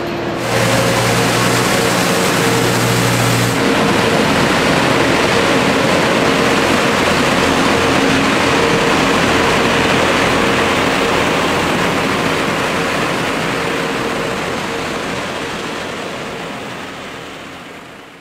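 Street-cleaning trucks running along a cobbled street: steady engine tones under a loud, even rushing noise. It fades out near the end.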